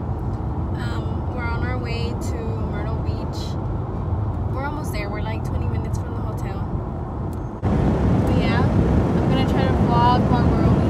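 Steady low rumble of a car's engine and road noise heard from inside the cabin, with brief stretches of voice over it. About three-quarters of the way through it jumps suddenly louder.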